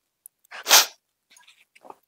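A woman sobbing while crying: one short, loud, gasping sob about three quarters of a second in, followed by a few faint small sounds.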